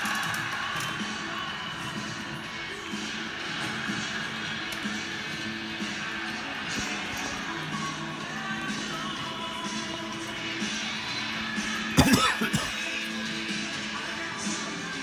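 Music playing from a television broadcast, heard across the room, with one brief loud knock near the end.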